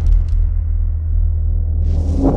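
Sound-effect bed of a video logo animation: a deep, steady low rumble, with a rush of noise sweeping in near the end.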